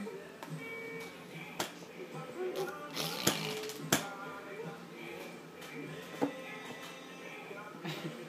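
A young baby making short growling and babbling vocal sounds over steady background music, with a few sharp knocks about three to four seconds in.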